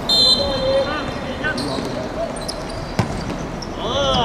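A referee's whistle blown once, a steady shrill tone about a second long, signalling the free kick to be taken. About three seconds in comes a single sharp thud of the ball being kicked, and players start shouting just before the end.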